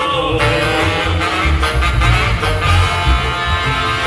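Live regional Mexican band music: a corrido played with a pulsing bass beat.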